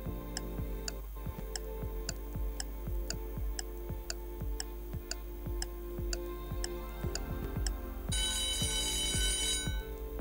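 Quiz countdown-timer sound effect: a clock ticking about twice a second over a low music bed, then an alarm-clock ring for about a second and a half near the end as the time runs out.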